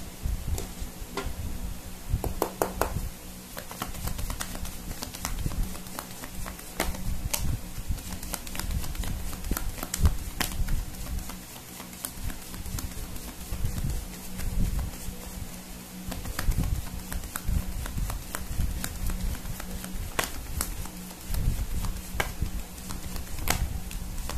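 A deck of oracle cards being shuffled by hand: irregular clicks and soft thumps of the cards tapping and slapping together, with a steady low hum underneath.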